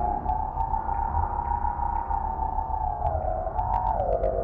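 Improvised electronic music: two close synthesizer tones glide together, holding high for most of the time, then wavering down near the end, over a steady low rumble with scattered faint clicks.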